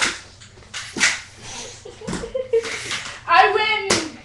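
Metal crutches swung and struck together: a few sudden whooshes and hits about a second apart, ending in one sharp clack. A voice cries out briefly just before that last hit.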